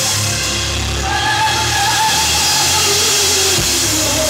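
Loud amplified rock band playing live, with drum kit and cymbals driving it. A long held note comes in about a second in, and a lower held note near the end.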